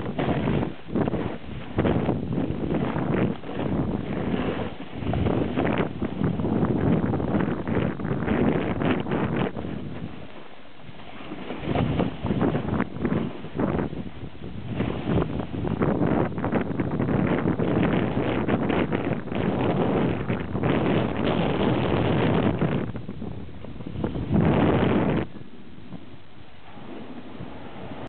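Wind buffeting the microphone of a camera carried downhill on a snowboard run, rising and falling in gusts. It eases briefly about ten seconds in and drops off near the end.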